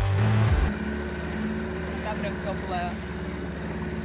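Small outboard motor on an inflatable dinghy running steadily under way, a continuous even hum. Music cuts off just under a second in.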